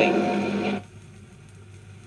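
A vinyl record playing an old speech recording: the woman's voice and the recording's steady hum end a little under a second in, and the record moves into the quiet gap between tracks, leaving faint surface noise with a few ticks over a low hum.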